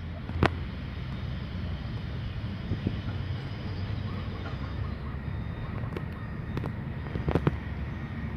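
Steady low outdoor rumble with a few short, sharp clicks: one about half a second in, and several more in the last two seconds.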